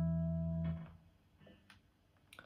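PRS electric guitar holding a sustained final chord that is damped and stops abruptly about three quarters of a second in, followed by a few faint clicks of strings and hand contact on the guitar.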